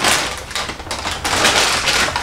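Thin plastic shopping bag rustling as a hand rummages inside it.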